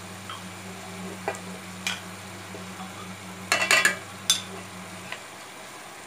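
Metal spoon clicking and scraping against a cooking pot and a jar as tomato paste is spooned in: a few sharp clicks, with a quick cluster past the middle. A low steady hum runs underneath and cuts off near the end.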